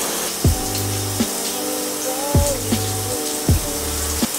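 Shower running: a steady spray of water hissing onto the tub, under background music with a slow beat.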